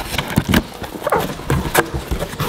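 A box cutter slitting the packing tape on a cardboard box, then the cardboard flaps being pulled open: a run of sharp rips, scrapes and knocks.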